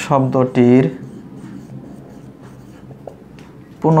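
Writing strokes scratching on a surface, steady and faint, between two drawn-out spoken words: one in the first second and one near the end.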